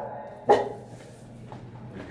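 A dog barks once, sharply, about half a second in.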